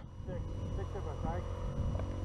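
GasGas enduro dirt bike engine running at low revs, a steady low rumble, with faint voices over it in the first second and a half.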